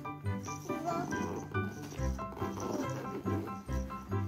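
Background music with short repeated notes over a bass beat.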